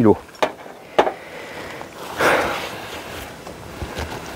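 A few light clicks and knocks of equipment being handled on a hive roof, with a short rustle a little over two seconds in.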